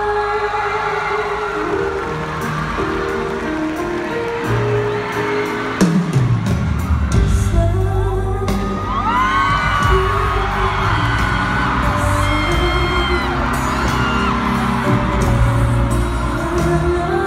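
Live female vocal pop ballad with keyboard and band. About six seconds in, the band fills out with a heavy bass and beat, and whoops from the audience ring out over the music.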